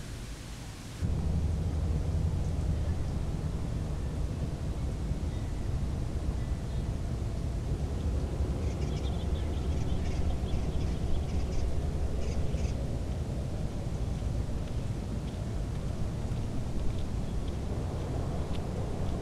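Steady low outdoor rumble that starts suddenly about a second in, with faint high ticks in the middle.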